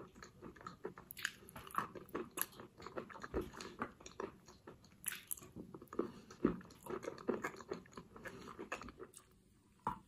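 Chalk coated in clay paste being bitten and chewed, with repeated crisp crunches and crackles that die away shortly before the end.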